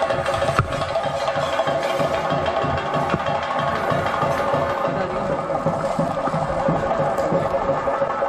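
Theyyam ritual music: fast, dense drumming with a steady, high held tone sounding over it.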